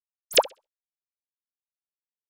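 A single short cartoon-style pop sound effect with a quick pitch glide, about a third of a second in, as text pops onto an animated end screen.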